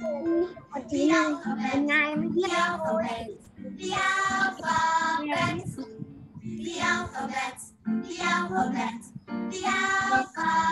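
A children's song: a child's voice singing over music, in short phrases with brief breaks.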